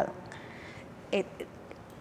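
Faint room tone in a lull between speakers, broken about a second in by a brief spoken "eh".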